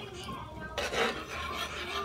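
A ladle scraping and rubbing against the pot while stirring thick mung bean soup, with the loudest rasping scrape about a second in.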